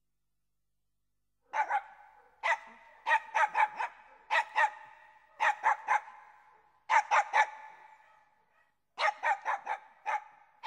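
A dog barking in quick bursts of two to four sharp, high barks, each burst followed by a short echo. The barking starts about a second and a half in.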